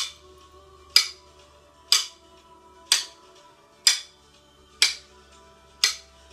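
Pair of wooden drumsticks struck together about once a second, each a sharp, loud clack, over faint background music.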